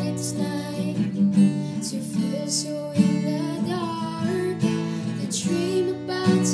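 Acoustic guitar strummed steadily, with a woman singing over it.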